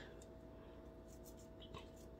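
Faint scrubbing of a toothbrush on a denture coated in foaming cleaner: a few soft, scratchy brush strokes over near silence.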